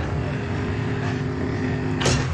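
Cars driving along a road, a steady engine and traffic drone.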